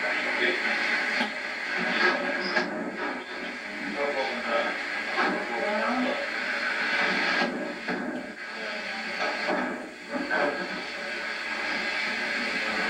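Indistinct talking over a steady hiss, with the thin, bass-less sound of an old videotape recording.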